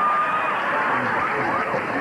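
Several voices talking at once over a steady murmur of studio audience noise, with no single voice standing out.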